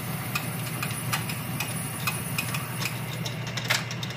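Metal lathe running in low gear, its tool taking a cut on a hardened steel snowblower shaft: a steady motor hum with regular ticking about two to three times a second and one sharper click near the end.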